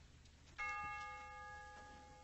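A single bell-like chime struck about half a second in, its several tones ringing on and slowly fading.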